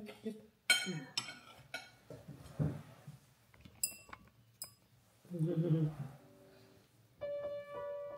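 Metal fork and knife clinking against a ceramic bowl while eating, about five short ringing clinks. Piano music comes in near the end.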